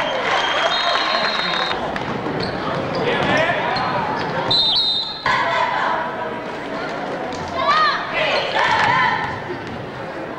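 Gym crowd and players' voices echoing in a large hall during a basketball game, with a referee's whistle held for about a second and a half just after the start and a short blast about four and a half seconds in.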